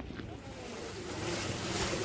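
Rushing wind noise on the microphone, growing louder through the second half.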